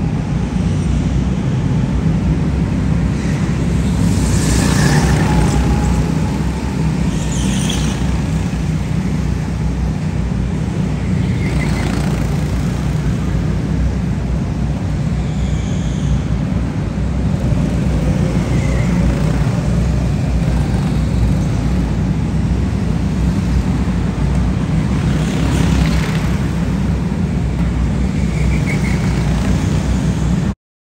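Go-karts running laps around an indoor track, with a steady low rumble throughout and a few brief squeals now and then.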